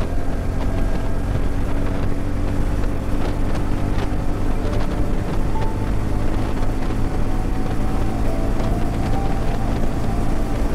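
TVS Ronin's single-cylinder engine running steadily at highway speed while the bike gains speed from about 80 to 100 km/h, mixed with steady wind noise on the microphone.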